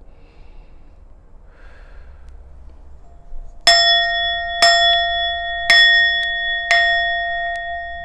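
Soft breathing for a few seconds, then a bell struck four times about a second apart, each strike ringing on and overlapping the last as it slowly fades.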